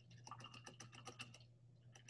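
Near silence with a quick run of faint clicks lasting about a second and a half, over a steady low hum.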